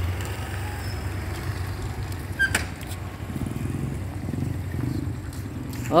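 Steady low outdoor rumble with no clear source standing out, and a single sharp click about two and a half seconds in.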